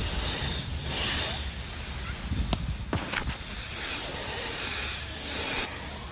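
Snake hissing as a film sound effect, a long hiss that swells twice and cuts off suddenly just before the end, with a couple of sharp clicks in the middle.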